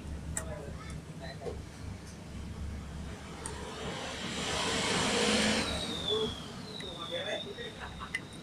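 A motor vehicle passing: a rushing noise swells and fades over about two seconds in the middle, with a high whine that drops in pitch as it goes. A steady low hum and faint voices run underneath.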